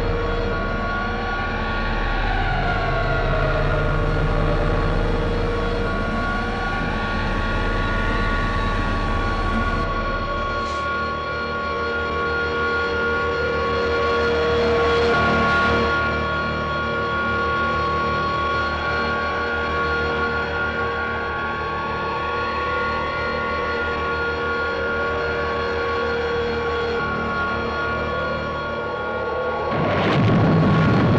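Science-fiction spaceship engine sound effect: a steady electronic hum of held tones with a slow warble that rises and falls every few seconds. A deep rumble under it drops away about a third of the way in.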